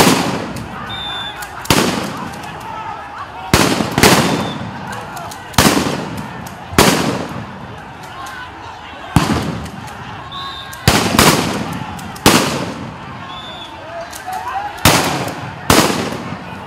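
Police firearms firing: about a dozen loud, sharp reports at irregular intervals, each with an echoing tail, over voices in the background.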